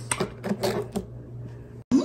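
A quick run of light clicks and taps in the first second, then quieter, with the sound cutting off abruptly shortly before the end.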